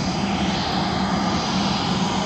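Steady drone of a jet airliner running on the ground: a constant low hum with a faint high whine.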